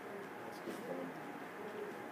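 Quiet room tone in a conference room, with a faint, low murmur of a voice about half a second in.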